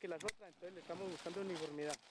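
A man speaking faintly, with a single sharp click about a third of a second in.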